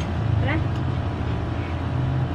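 A steady low hum runs throughout, with a brief spoken word about half a second in.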